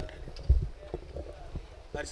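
Handheld microphone handling noise: low thumps and rustle as the microphone is gripped and brought up to the mouth, the loudest thump about half a second in.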